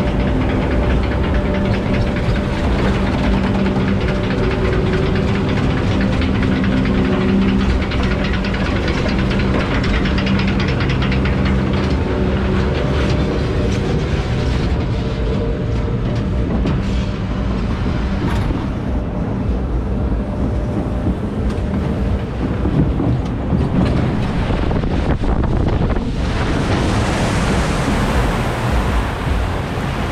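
Log flume boat riding up the lift hill: a steady mechanical rumble and clatter with a low hum from the lift. Near the end it gives way to a loud rush of water as the boat runs down the drop.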